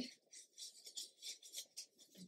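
Faint paper rustling as loose sheets and paper pieces are handled and slid against each other, in a string of short, irregular scrapes.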